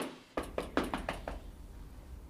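Fist knocking on a door, a quick run of about seven knocks in the first second and a half, then a low hum.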